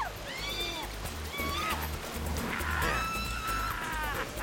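Two riders whooping and shrieking in long, arching cries as they ride a water slide together, over background music with a steady pulsing bass.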